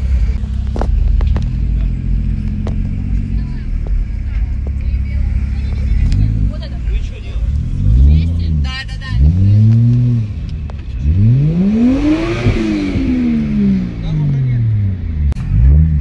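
Car engine running at a steady low drone, then revved again and again from about six seconds in, each rev rising and falling in pitch, with one long rev near the middle of the second half.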